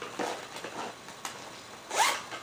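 Soft rustling and scraping from handling a small zippered cosmetic bag and the products inside it, in several short bursts, with a louder scrape at the end.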